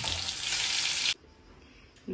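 Bitter gourds (karela) frying in hot oil in a steel wok, sizzling steadily. The sizzle cuts off suddenly about a second in, leaving quiet room tone.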